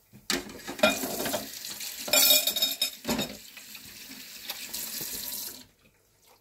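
Ground-meat patties frying in oil in a lidded pan: a steady sizzle with louder crackling spurts, cutting off abruptly near the end.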